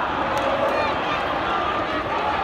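Stadium football crowd: many voices shouting and chanting together in a steady wash of sound.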